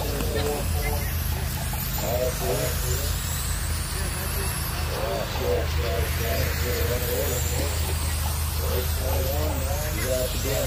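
Radio-controlled late-model race cars running laps, their motors giving a faint high whine that rises and falls, under talking voices and a steady low hum.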